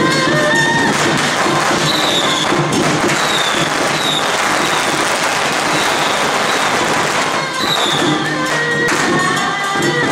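A string of firecrackers crackling densely from about a second in until near the eight-second mark, over loud procession music that comes through clearly again at the end.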